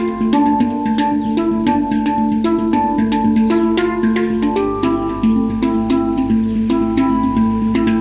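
Handpan tuned to D Kurd played with the bare hands: a quick, steady stream of struck steel notes, several a second, each ringing on and overlapping the next.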